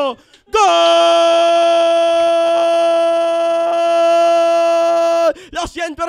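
A sports commentator's drawn-out goal cry: after a quick breath, one long shouted note held at a steady pitch for about four and a half seconds, breaking into a few short shouted syllables near the end.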